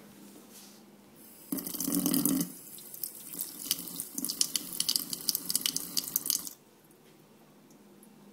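Kitchen sink faucet turned on about a second and a half in, a loud gush at first, then water running and splashing over a plastic measuring spoon being rinsed under the stream. The tap shuts off suddenly about a second and a half before the end.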